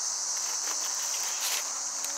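Steady, high-pitched chorus of insects singing, with a few faint clicks about halfway through.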